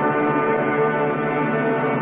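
Orchestral music with brass holding sustained chords.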